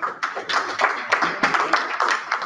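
Audience applauding: many hands clapping densely and unevenly, without a break.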